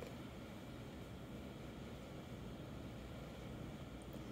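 Quiet room tone: a faint, steady hiss over a low hum, with no distinct events.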